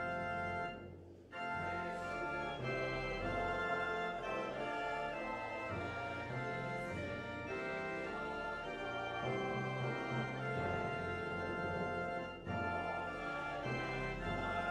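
Church organ playing slow sustained chords, with short breaks between phrases about a second in and again near the end.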